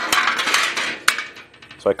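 Sheet-metal parts being handled on a metal bench: a rattling scrape for about a second, then one sharp click.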